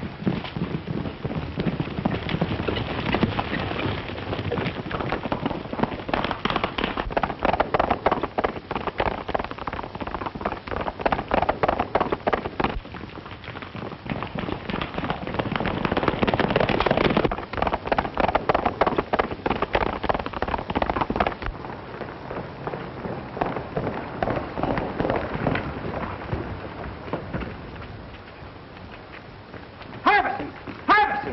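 Horses galloping: a dense, rapid clatter of hooves that swells and fades several times.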